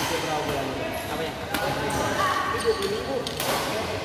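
Badminton rackets striking a shuttlecock in a doubles rally, sharp hits about one and a half to two seconds apart, ringing in a large hall.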